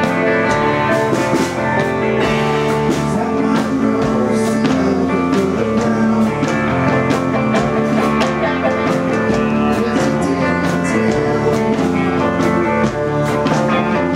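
Live roots-rock band playing an instrumental passage: electric bass, Telecaster-style electric guitar and mandolin over drums with a steady beat.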